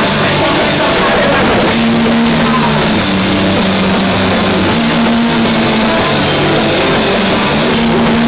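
Live rock band playing loudly and without a break, with a drum kit, guitars and bass.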